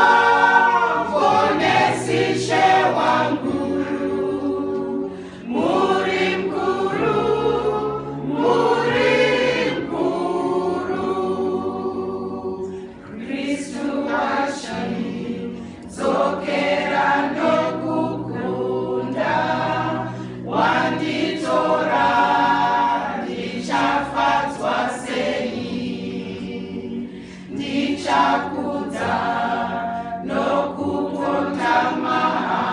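Women's choir singing together, in phrases a few seconds long with short breaks between them.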